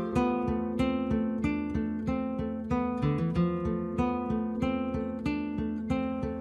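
Background music: an acoustic guitar strummed at a steady, even rhythm.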